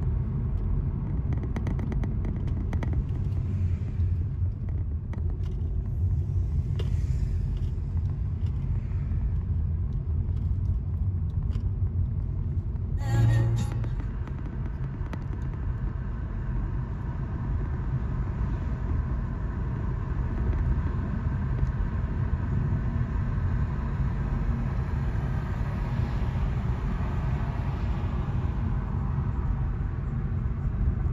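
A car driving on a road, heard from inside the cabin: a steady low rumble of road and tyre noise. About 13 s in, a brief loud jolt marks a cut to a different recording of the same kind of driving noise.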